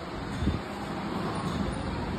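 A steady low rumble with hiss, background noise of the kind made by distant traffic or air moving over the microphone.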